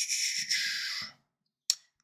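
A breathy exhale into the microphone fades out about a second in. Near the end comes a single sharp click from picking an item in the software.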